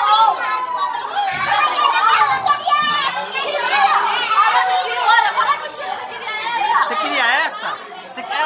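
Overlapping chatter of several children and adults talking at once, with many high-pitched children's voices.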